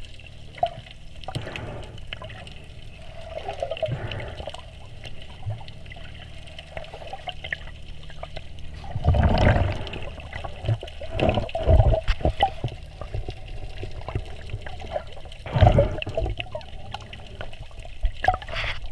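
Muffled water sounds heard by an underwater camera as a snorkeler swims with fins: a steady low swirl and bubbling, with several louder, deep rushes of water.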